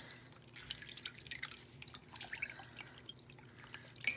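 Faint, irregular drips and small splashes of water into a bowl as a charcoal face mask is washed off the face by hand.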